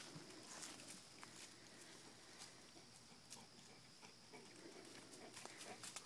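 Near silence: faint outdoor background with a few soft clicks and rustles.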